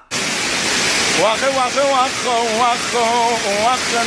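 Steady rushing of a waterfall, starting abruptly. From about a second in, a man's voice sings a wordless string of short, wavering notes over the water noise.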